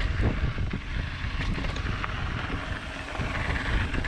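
Wind buffeting the microphone of a camera on a mountain bike descending a dirt trail, over the crunch of the tyres rolling on dirt and gravel. Scattered knocks and rattles come from the bike as it goes over bumps.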